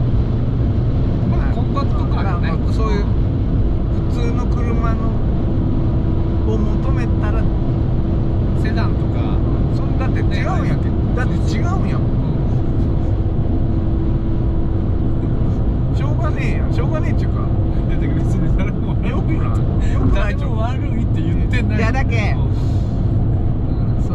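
Steady low drone of engine and tyre noise inside the cabin of a Fiat 500 1.2 cruising on an expressway, with a constant hum running under it.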